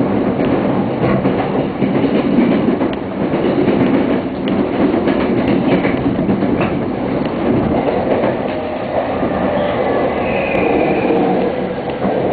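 Running noise heard inside an E231 series electric commuter train in motion: a steady rumble of wheels on rail with scattered clicks from rail joints, and a brief high tone about ten seconds in.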